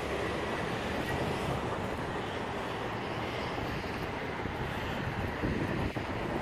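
Steady rushing wind noise on the microphone over a low rumble of street traffic.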